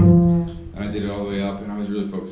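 Upright bass: a last plucked note rings out and stops about half a second in. Then a man's voice comes in over a string that is still sounding low and steady.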